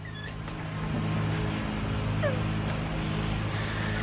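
Lawnmower engine running steadily, with a faint short squeak about two seconds in.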